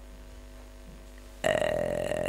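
A faint steady hum, then about a second and a half in an elderly man's voice: one drawn-out sound held at a level pitch for about a second.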